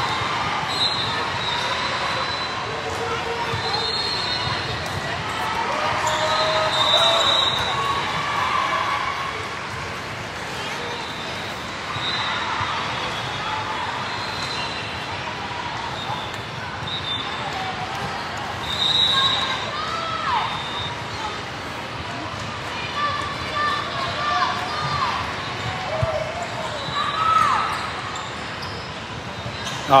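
The sound of a busy volleyball hall: many voices calling and shouting across the courts, with balls being struck and shoes giving short high squeaks on the court floor, all echoing in the large hall.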